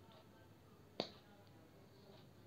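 A single sharp lip smack about a second in, as lips coated in matte liquid lipstick are pressed against and pulled off the back of a hand to leave a print; otherwise near silence.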